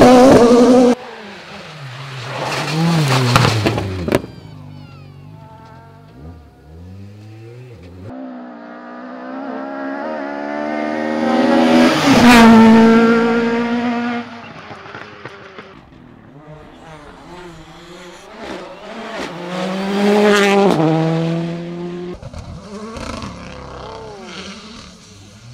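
Rally car engines revving hard as several cars pass one after another, each rising in pitch as it comes and dropping away after. The loudest pass is a Mk2 Ford Escort about halfway through, and there are clip cuts near the start.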